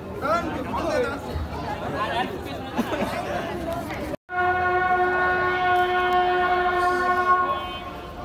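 People talking, then, after a sudden cut, a loud steady pitched tone held for about three seconds before it fades.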